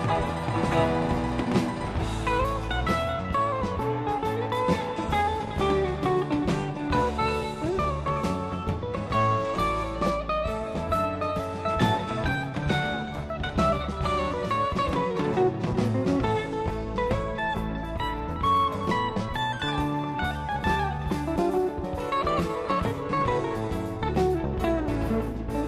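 Live rock band playing an instrumental section: a lead electric guitar plays a solo line that moves up and down over bass and drums.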